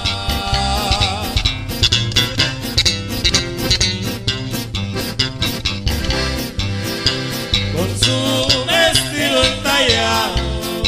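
Live regional Mexican sierreño band music: a button accordion plays the melody over a steady, even beat of bass and strings.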